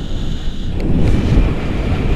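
Wind buffeting the camera microphone in flight under a tandem paraglider: a loud, steady low rumble that grows stronger about halfway through.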